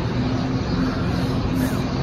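A steady low mechanical hum with a faint drone underneath, unchanging through the pause in talk.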